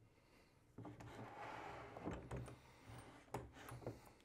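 Faint handling sounds of a pull-off test rig being fitted over a bolt in a plywood test block: soft rubbing, then a few light clicks of metal on wood.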